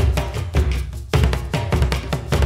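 Shamanic hand drum beaten in a fast, even rhythm of deep, booming strokes, several a second, with a brief break about a second in before the beat resumes.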